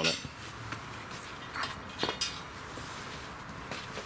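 A few sharp clicks and light knocks, the clearest about two seconds in: a refractory plug being handled over the steel furnace lid to close its vent hole.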